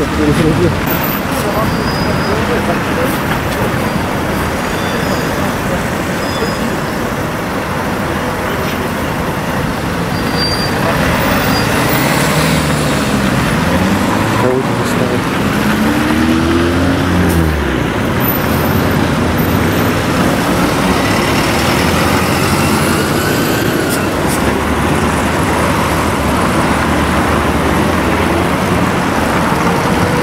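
City street traffic: cars and buses running and passing close by, a steady road noise, with an engine's pitch sliding up and down about halfway through.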